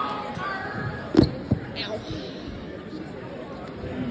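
Audience chatter from a crowd in a school gymnasium, with two sharp thumps a moment apart about a second in.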